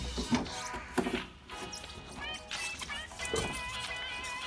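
Soft background music with wavering high tones, under a few light knocks from the scooter's front wheel and drum brake being worked free of the fork.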